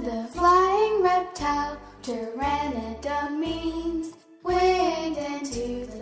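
A child singing a melody over musical accompaniment with steady low notes, with a brief pause about four seconds in.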